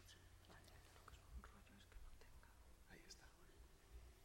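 Near silence: a steady low hum of the hall sound system, with faint whispered talk away from the microphone and a few small clicks.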